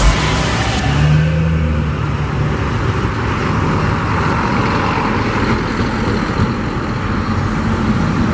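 Diesel semi-trailer truck driving away along a highway, its engine note steady for a couple of seconds and then merging into continuous road and traffic noise.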